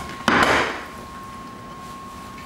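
A cake pan and ceramic plate, held together in a kitchen towel, are flipped over and set down on the counter: a small click, then a short clunk and cloth rustle about a quarter of a second in.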